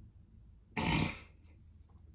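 A woman's single short, sharp burst of breath from the throat, about a second in, over quiet room tone.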